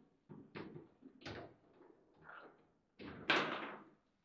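Foosball table knocking and clattering as the rods are worked: several separate sharp thuds, then the loudest, longer clatter near the end.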